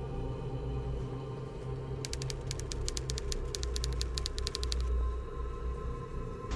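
A fast run of sharp mechanical clicks, about ten a second, lasting some three seconds from about two seconds in, laid as a sound effect over a low, dark droning music score.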